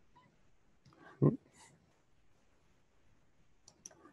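Quiet room with one short muttered vocal sound about a second in, and a couple of sharp computer clicks just before the end as the screen changes to a browser page.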